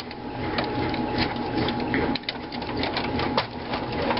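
Irregular clicks and rattles of cables and plastic connectors being handled against the sheet-metal frame of a desktop computer case.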